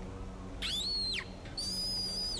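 A rat squeaking twice in high-pitched calls: the first rises and falls, the second is held level. A low steady hum runs underneath.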